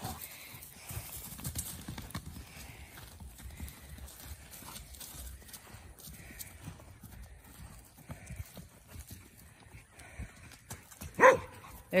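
A colt's hoofbeats as it gallops and trots over grass: faint, irregular dull thuds. A woman's voice comes in near the end.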